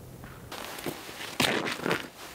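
Footsteps of a person walking on frozen, frosted ground and ice, starting about half a second in, with the loudest steps near the end.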